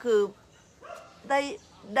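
A dog barks once, faintly, about a second in, between phrases of a woman's speech.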